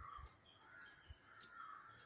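Near silence with a few faint, harsh bird calls from some distance, about three in two seconds.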